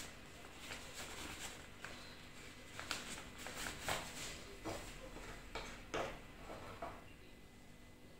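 Faint rustles and a few light clicks, about half a dozen, scattered through the middle of an otherwise quiet stretch, from a piping bag being handled.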